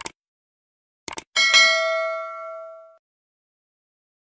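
Subscribe-button sound effect: two quick clicks, two more about a second later, then a bell ding that rings on and fades out over about a second and a half.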